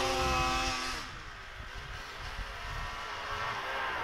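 Snowmobile engine running at a steady pitch that drops and fades about a second in, then a fainter engine sound growing louder toward the end as the snowmobile comes back across the snow.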